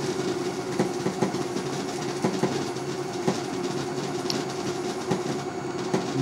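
Fusor apparatus running: a steady electrical hum with machinery drone, and several sharp ticks at irregular moments.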